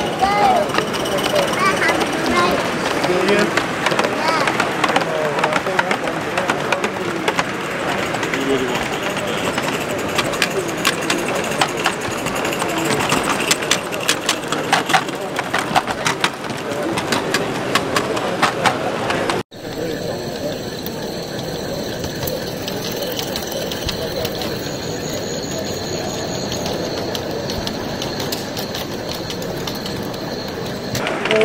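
Crowd chatter in a large hall, with a run of rapid sharp clicks from about ten seconds in; after an abrupt cut just past halfway, a steadier hall murmur.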